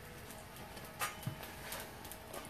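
Quiet outdoor background with one light click about a second in.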